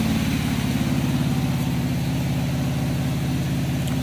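Mahindra Jivo mini tractor's diesel engine idling steadily, an even low-pitched throb.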